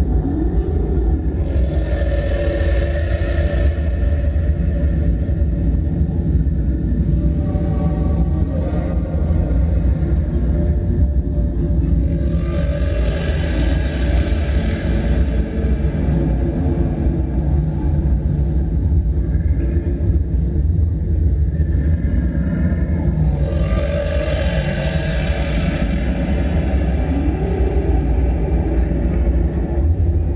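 Heavy metal band playing live at full volume: distorted electric guitars, bass and drums in a dense, unbroken wall of sound, heaviest in the low end. Brighter, higher passages swell in three times.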